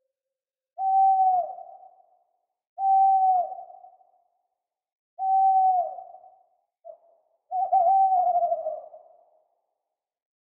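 Owl hooting: four single hoots about two seconds apart, each a steady note that dips in pitch at its end and trails off in an echo. The last hoot wavers.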